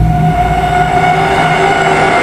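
A loud, steady drone of several held tones from trailer sound design, with a low rumble underneath that drops away about a third of a second in.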